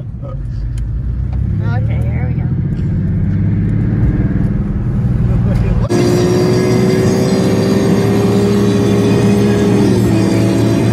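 Car engine pulling away and accelerating, growing steadily louder over the first few seconds. About six seconds in, the sound changes abruptly to a steady drone with one held tone that rises slowly in pitch.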